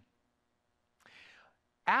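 A short pause in a man's speech, picked up by a headset microphone: silence, then a brief breath drawn in about a second in, and his voice starts again just before the end.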